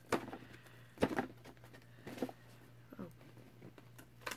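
Cardboard subscription box being pried open by hand at a tab that won't give: a few short scrapes and knocks of the cardboard, the loudest about a second in.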